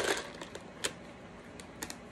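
Small wooden letter tiles clicking together as they are handled: a few sharp, sparse clicks, two of them close together near the end.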